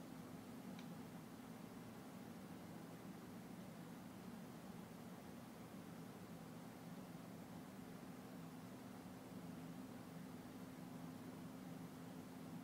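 Near silence: a faint steady low hum and hiss, with one faint tick about a second in.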